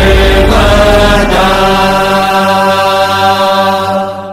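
Devotional Hindu chant music settling into one long held note with a steady drone.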